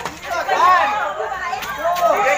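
Several people talking and calling out over one another in lively chatter.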